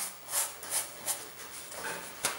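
Paintbrush scrubbing on a stretched canvas in about four short strokes, wiping out the thin oil-paint sketch with a brush dipped in thinner.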